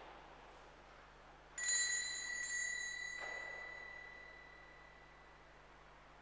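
Altar bell rung by the server at Mass: one bright ring about a second and a half in, fading away over about four seconds.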